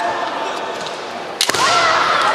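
A single sharp crack of a bamboo kendo shinai striking, about a second and a half in, followed at once by the fencers' loud kiai shouts.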